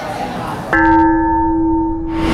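A bell-like chime sound effect: a cluster of several steady ringing tones starts suddenly under a second in and holds without fading.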